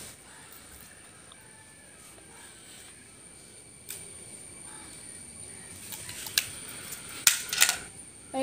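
Quiet handling noise: a few short sharp clicks and crackles as thin sticks and a small plastic roll are handled, the loudest three in the last two seconds. A faint steady high whine runs underneath.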